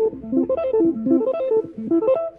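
Electric guitar playing a fast arpeggio, fingerpicked, with single notes stepping rapidly up and down the chord, about seven or eight notes a second.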